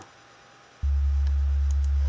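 Steady 70 Hz sine wave from REAPER's tone generator plugin, a deep sub-bass hum that switches on suddenly about a second in.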